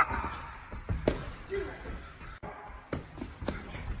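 Boxing gloves landing punches in a sparring exchange: a scattered series of separate sharp thuds and smacks, one of the sharpest a little before the end.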